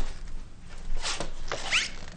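A wooden door and its handle being worked: several sharp clicks and rattles, with a short rising squeak near the end.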